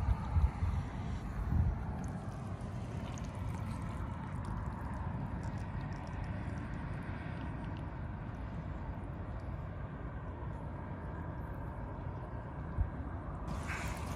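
Steady outdoor background rumble with a faint continuous hum, with one short knock near the end.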